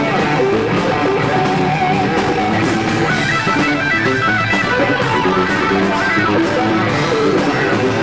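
Live rock music led by electric guitar, a stream of changing notes played at a steady, loud level.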